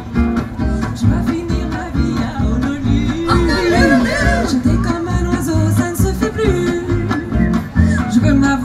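Live acoustic band of upright bass, two acoustic guitars and violin playing an instrumental passage: strummed guitar rhythm over a bass line, with a gliding melody line rising above it in the middle.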